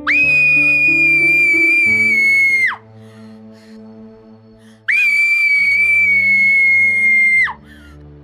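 A girl screaming twice from a bad dream: two long, high, steady screams of nearly three seconds each, the second starting about five seconds in, each falling off in pitch at the end. Soft background music plays underneath.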